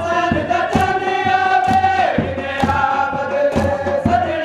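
A noha (Shia lament) chanted by many men's voices together in long held notes, over sharp rhythmic slaps about twice a second from chest-beating (matam).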